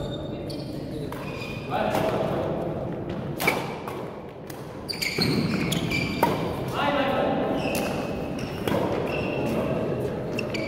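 Badminton rally: sharp racket strikes on a shuttlecock, several of them, with short shoe squeaks on the wooden sports-hall floor, echoing in the large hall over a murmur of voices.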